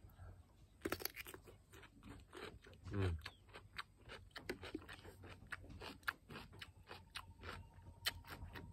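Biting into a crisp cucumber, a sharp crunch about a second in, then close-up crunchy chewing with many irregular small crunches.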